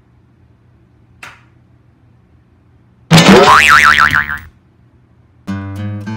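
A light tap on the hanging pistol about a second in, then a loud cartoon "boing" sound effect about three seconds in, its pitch sliding up and wobbling for about a second and a half. Strummed acoustic guitar music starts near the end.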